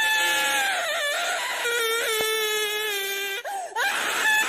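A high, drawn-out whimpering wail in a cartoonish voice. It holds and wavers, breaks briefly about a second in, then sinks lower and cuts off near the end.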